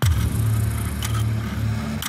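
Deep low rumble that hits suddenly and holds for about two seconds, swelling slightly, then cuts off: a trailer sound-design stinger.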